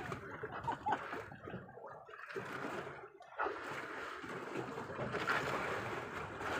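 Wind and sea-water noise aboard a small boat on open water, a steady rushing hiss that dips briefly about three seconds in.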